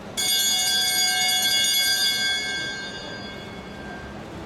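Velodrome lap bell ringing: it starts suddenly just after the start, rings steadily and loud for about two seconds, then dies away. It signals the rider's final lap.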